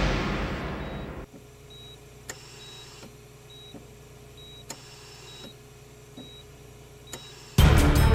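A loud whooshing swell fading away over the first second, then an operating-theatre heart monitor beeping steadily, a little faster than once a second, with a few faint clicks. Loud music cuts in near the end.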